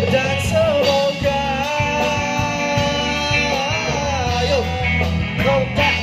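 A live pop-rock band playing through PA speakers: a male singer holding long, wavering sung notes over electric guitars, bass and drums.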